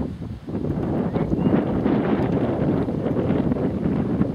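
Wind buffeting the camcorder's microphone: a steady, loud low rumble.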